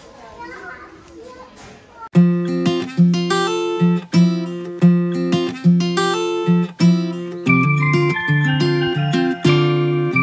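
Acoustic guitar music starts suddenly about two seconds in, with chords plucked roughly once a second and a busier picked melody joining near the end. Before it, faint murmur of voices.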